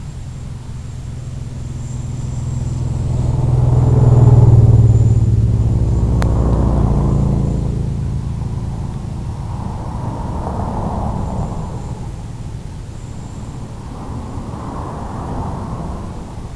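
Small electric FPV aircraft in low flight, heard from its onboard camera microphone: motor and propeller drone mixed with a rushing wind noise, swelling loudest about four seconds in and then easing off as it descends.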